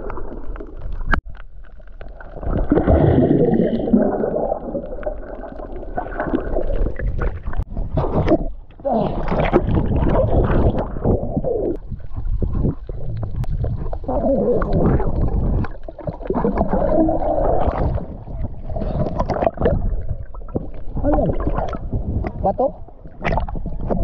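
Muffled underwater sound of water sloshing and gurgling around a submerged camera, coming in surges every two to three seconds.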